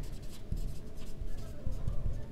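Marker pen writing on a whiteboard, a run of short, irregular scratchy strokes.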